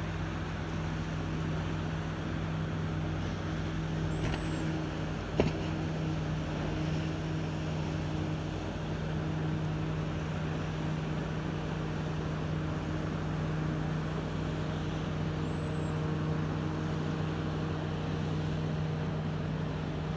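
Motorboat engine running with a steady low drone, a hum held on a few constant pitches. A single sharp click sounds about five seconds in.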